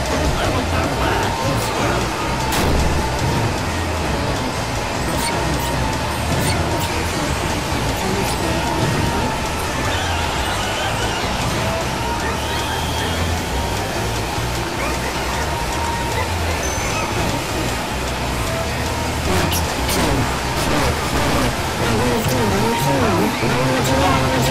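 A dense, continuous jumble of overlapping voices and music, layered so thickly that no words can be made out.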